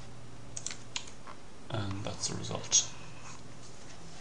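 Stylus tapping and clicking on a tablet screen as figures are handwritten: a few sharp clicks, the loudest near the end, with a brief murmured voice a little before. A low steady electrical hum runs underneath.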